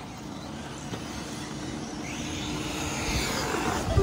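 Nitro-powered 1/8-scale RC buggies running on the track, with one high engine whine rising and falling in pitch in the second half as a buggy passes, growing louder toward the end.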